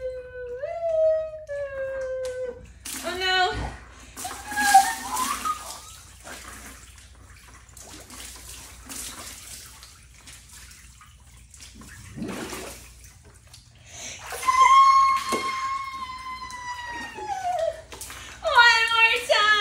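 A woman's voice holds a sliding "ahh", then water splashes as she plunges under the water of a small tub-sized pool. Water sloshes faintly for several seconds while she is submerged, and near the end a long high-pitched whoop rings out as she surfaces.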